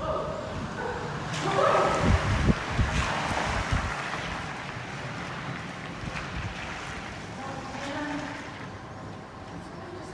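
A horse trotting on soft arena footing, its hoofbeats muffled. A louder burst of rushing noise with low thumps comes about one and a half to four seconds in.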